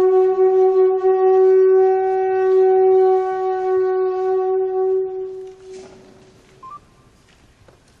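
A hand-held horn blown as one long, steady note lasting about six seconds, fading away near the end.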